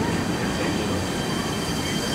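The tail end of a grain train's covered hopper cars rolling past: a steady rumble of steel wheels on the rails as the last car goes by.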